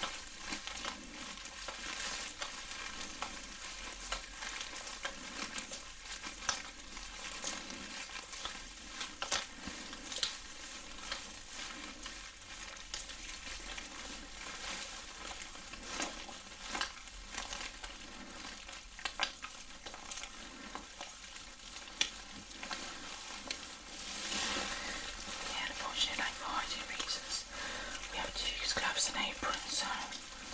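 Close-up wet massage sounds: gloved hands rubbing and squelching with a steady crackle of tiny clicks, with some plastic crinkling. The sounds grow louder in the last few seconds.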